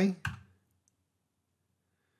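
A single computer mouse click, a quarter of a second in.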